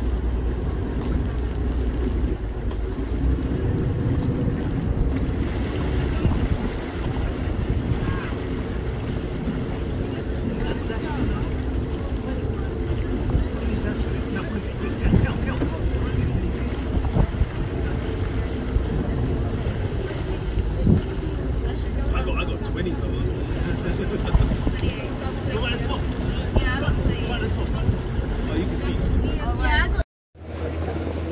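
Steady low drone of a boat's engine underway on a canal, with water noise and wind buffeting the microphone; voices talk in the background in the second half.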